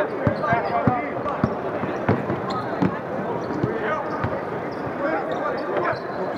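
A basketball dribbled on a hardwood court: a string of sharp bounces about every half second to second, the players' voices around it.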